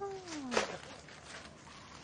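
A short pitched call that slides down in pitch, ending in a sharp knock about half a second in, then only faint background noise.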